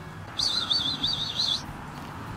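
A songbird singing one high, rapidly warbling phrase of just over a second, starting about half a second in.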